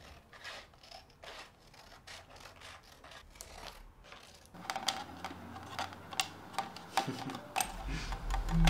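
Scissors cutting through a sheet of paper: a run of short snips, soft at first and louder and sharper from about halfway through.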